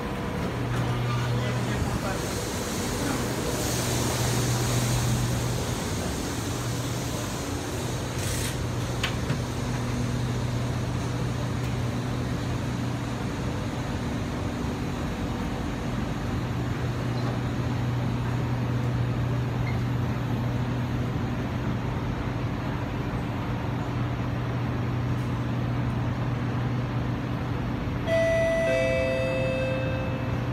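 Kawasaki C151 train standing at a station with its doors open: a steady low hum from the train's onboard equipment under station and passenger ambience. Near the end a stepped electronic door-closing warning chime starts.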